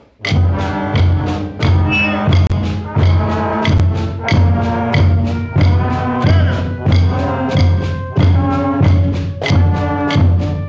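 School band playing a scale together after a count-in, one short note after another at about two to three notes a second, with strong low notes.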